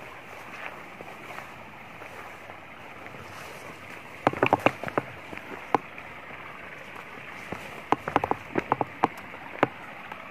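Small, shallow rocky stream running steadily. Two clusters of sharp clicks and crunches break in, about four seconds in and again about eight seconds in.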